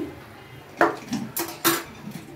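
Metal cookware clanking: a frying pan held in a pan gripper is set down on the counter and a pressure cooker is taken up. There are three short, sharp knocks, the first about a second in and two close together near the end.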